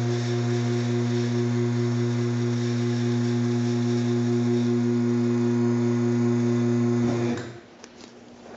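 Electric pump motor of a two-post car lift running with a steady hum as it raises the car, cutting off near the end.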